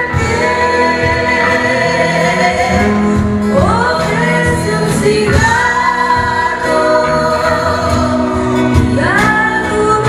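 Live blues band playing with singing: long held sung notes, several swooping up into pitch, over guitar and bass accompaniment.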